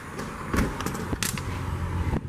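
An exterior door being opened and walked through: a few sharp clicks and knocks from about half a second in, with a low outdoor rumble under them once outside.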